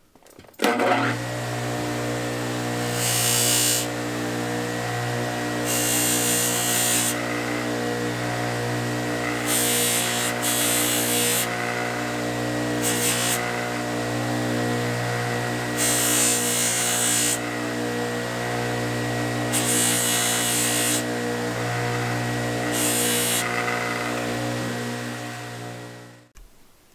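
Sears Craftsman 1/2 HP bench grinder switched on about a second in, its motor running with a steady hum. About seven times the rusty steel blade of a straight razor is pressed against the spinning wire wheel, each pass a scratchy hiss of a second or two as the rust is brushed off. The motor winds down near the end.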